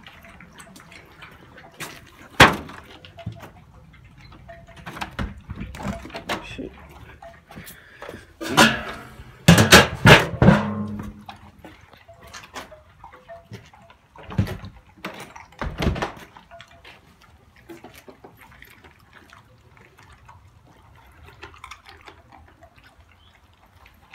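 Dogs eating dog food softened with water from plastic bowls: wet chewing and lapping with scattered sharp knocks, the loudest cluster around ten seconds in.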